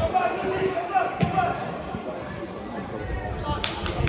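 Footballers shouting to each other across the pitch, with the dull thud of a football being kicked a little over a second in. A few sharp clicks come near the end.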